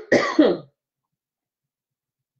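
A woman coughing, two quick coughs, the second one short and finished before the first second is out.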